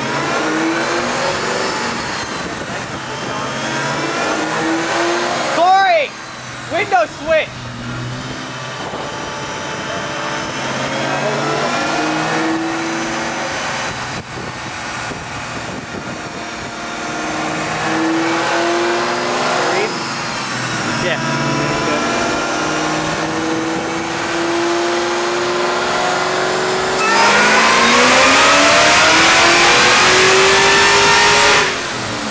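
Ford Mustang Cobra V8 running on a chassis dyno, revving up in repeated rising sweeps with a few quick throttle blips about six to seven seconds in. Near the end it jumps to a much louder full-throttle pull, rising steadily in pitch, on a wet nitrous kit.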